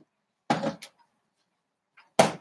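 A short, distant clunk about half a second in, followed by a faint click: the refrigerator and its door being handled as the milk container is put away.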